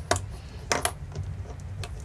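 Fingers handling a small video transmitter module and its wires, giving a few light, sharp clicks and taps, the loudest just under a second in.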